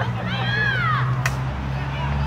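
A person shouting one long call, rising then falling in pitch, in the first second, over a steady low hum; a short sharp click follows just after.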